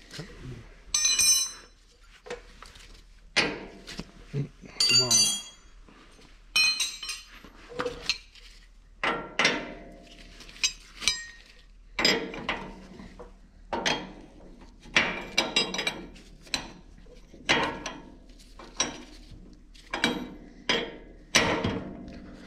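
Steel wrenches working on a hydraulic coupler fitting as a flat-face coupler is tightened: a run of separate metallic clinks and scrapes, a few ringing briefly early on, then about one or two strokes a second.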